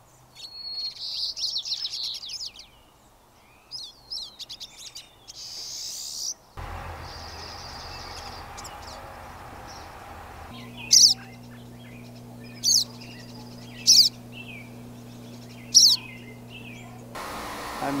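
Small songbirds chirping and calling, in several short takes that change abruptly. In the last part, four loud, sharp calls come about a second and a half apart over a low steady hum.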